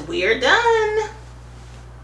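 A woman's voice making a short wordless exclamation, pitch sliding up and down for about a second, then only a quiet steady hum.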